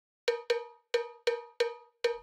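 Pitched percussion in a music intro: five short, bright metallic strikes, two quick ones and then three evenly spaced, each ringing briefly.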